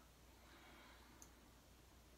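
Near silence: room tone, with one faint tiny click just over a second in.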